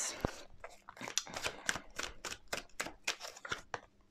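A deck of large tarot cards being shuffled by hand: a quick, even run of soft card slaps, about five a second, after one low knock at the start.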